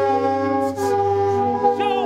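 Several Hmong qeej, bamboo free-reed mouth organs, playing together: a steady drone of held notes sounding at once, with the chord shifting only slightly.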